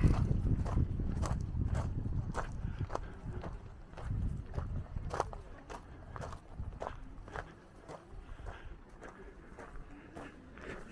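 Footsteps on a gravel path, about two steps a second, with wind buffeting the microphone. The wind is strongest in the first few seconds, then dies down.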